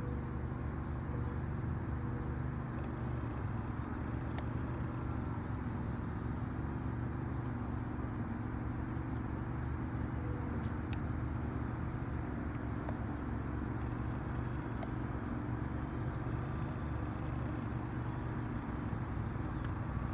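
Steady low outdoor rumble with the faint, even drone of a radio-controlled model plane's motor and propeller flying overhead.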